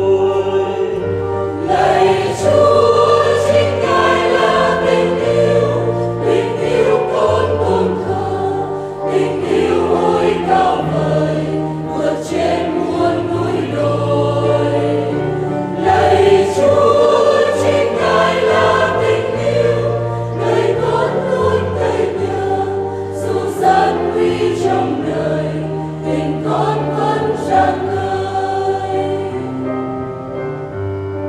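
A choir sings a Vietnamese Catholic hymn over sustained low notes, running from the end of a verse into the refrain.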